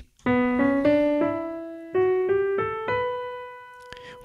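Piano-voiced electronic keyboard playing a B natural minor scale ascending one octave, eight single notes from B up to B, with a short pause halfway up. The top B is held and fades away.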